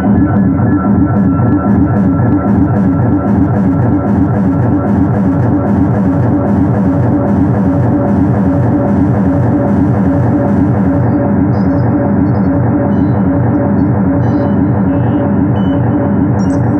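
Moog Matriarch analog synthesizer, unprocessed, playing a loud, dense drone with a fast pulsing rhythm in the bass and steady held tones above it. A faint high ticking over the top drops away about eleven seconds in.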